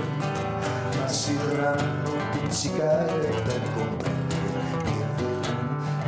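A man singing a slow song to his own acoustic guitar, strummed and plucked under the sung melody.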